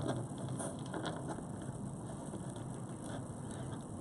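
Faint handling noise: a few soft clicks and rustles as hands lay a cloth tape measure against a knotted leather-cord bracelet on a paper sheet.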